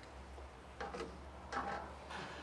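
A few faint, light clicks and taps, one a little under a second in, another just after, and a small cluster around a second and a half, over a low steady hum.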